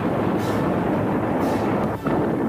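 Battleship's main guns firing: a loud, steady rumble from the blast, with faint sharper cracks about half a second and a second and a half in.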